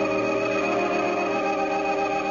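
Organ music: a single chord held steadily.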